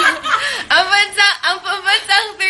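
A group of people laughing. A little way in it turns into a run of quick, evenly repeated laughs, about four a second.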